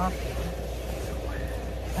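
Diesel air heater running with a steady low hum.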